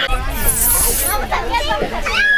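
Children's voices chattering and calling out at a playground, with a brief high hiss about half a second in.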